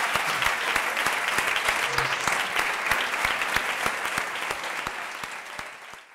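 Audience applause: many people clapping together in a dense, steady patter that fades over the last second or so.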